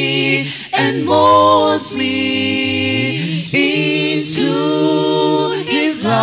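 A cappella vocal quartet of male and female voices singing a gospel song in close harmony, with no instruments. The voices hold chords that change about every second, and a low voice slides upward about halfway through.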